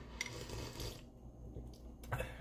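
Faint handling sounds: a ceramic mug being moved about on a countertop, with light rubbing and a soft click near the start.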